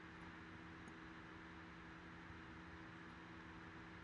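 Near silence: room tone, a faint steady low hum with light hiss.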